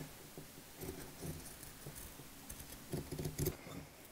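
Faint, irregular rustling of a piece of fabric being handled and lifted on a cutting mat, in two short flurries, about a second in and again around three seconds in.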